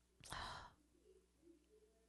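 A single short breathy sigh from a woman close to a microphone, about a quarter of a second in; otherwise near silence.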